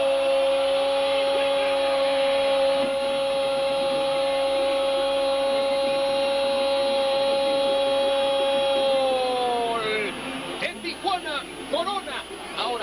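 Spanish-language football TV commentator's long goal cry, '¡Gol!', held on one steady high note for about nine seconds, then sliding down in pitch and breaking off about ten seconds in. Brief talk follows near the end.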